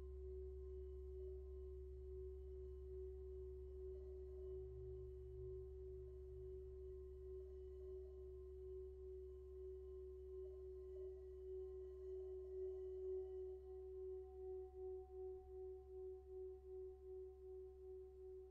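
Tibetan singing bowl sung by rubbing a wooden striker around its rim: one steady, faint tone with higher overtones above it. In the second half the tone wavers in a slow, regular pulse.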